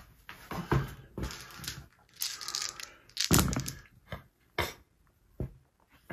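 A handful of six-sided dice rolled into a felt-lined dice tray: a few patches of rattling clatter, then several single sharp knocks.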